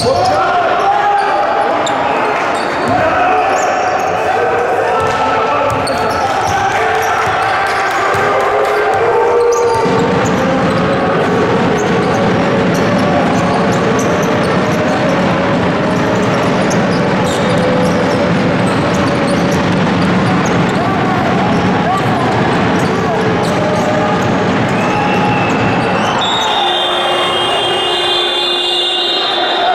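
Live sound of an indoor basketball game: the ball bouncing on the hardwood court amid shouting voices from players and spectators, echoing in the gym hall. A steady high-pitched tone starts near the end.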